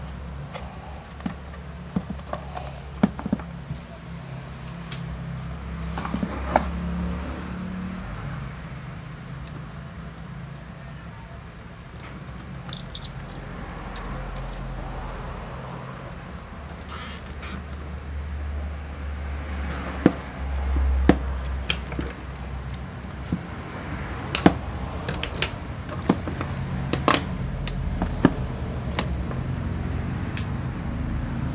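Scattered sharp clicks and taps of wires, connectors and a plastic motorcycle tail light housing being handled, over a low background rumble of road traffic that swells and fades several times.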